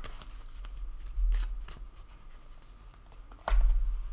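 Tarot cards being shuffled and handled: papery rustles and light taps, with two heavier bumps, about a second in and near the end.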